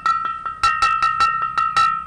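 A large yellow porcelain floor vase being tapped in quick runs of about five knocks a second, its body ringing with one clear, sustained bell-like tone. The clean ring is what shows the piece is intact and uncracked.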